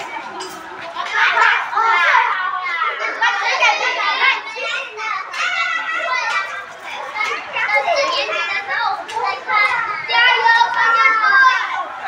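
A large group of children's voices shouting and chattering over one another, high-pitched and continuous.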